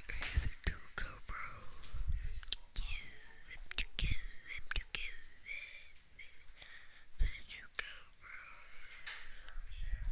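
A boy whispering quietly to himself, with scattered small clicks and taps.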